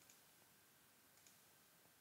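Near silence, room tone, with a couple of faint computer mouse clicks: one right at the start and one a little past a second in.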